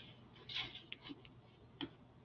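A few faint, sparse clicks over quiet room tone, with a soft brief rustle about half a second in.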